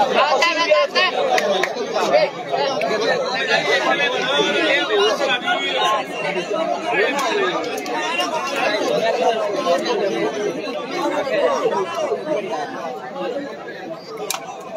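A large crowd of spectators chattering, many voices overlapping into a dense, steady babble.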